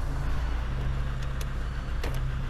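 A car engine idling steadily: a low, even hum.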